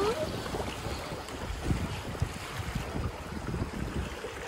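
Swift river current rushing past a kayak, with wind buffeting the microphone in low gusts. The water runs fast here because of a rocky riverbed beneath.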